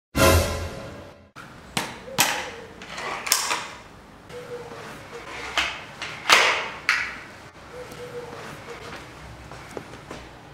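A pneumatic air rifle being handled, cocked and loaded: a run of irregular metallic clicks and knocks, the loudest about six seconds in, then quieter as it is brought up to aim.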